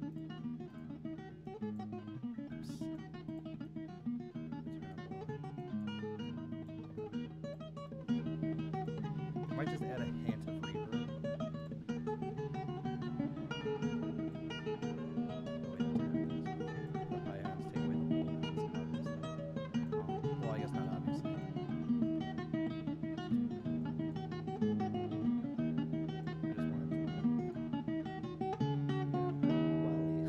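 Recorded acoustic fingerstyle guitar playing a Dorian, Celtic-sounding tune from the mixing software. Low sustained notes sit under a moving plucked melody, and it gets louder about eight seconds in.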